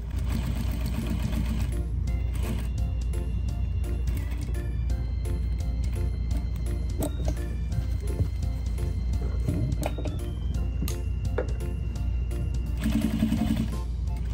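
Sewing machine running steadily, stitching through quilt layers, with light needle clicks over a low motor hum. Background music with sustained notes plays throughout.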